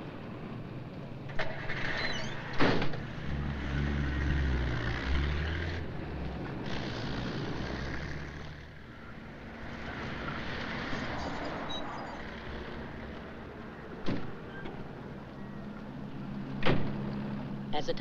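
A 1940s taxicab: a car door slams about two seconds in, and the engine rumbles loudly as the cab pulls away, then runs steadily as it drives. Two more sharp door knocks come late, as the cab stops.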